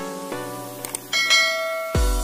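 Light plucked-note background music, then about a second in a bright bell chime rings out and holds before fading: a notification-bell sound effect.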